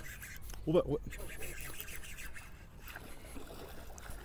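Faint rubbing and water sounds while a hooked fish is played on a bent baitcasting rod, with a short vocal sound from the angler about a second in.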